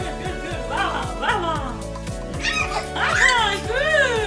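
Background music with a steady beat, over which babies squeal in about five short calls that rise and fall in pitch, the loudest and longest near the end.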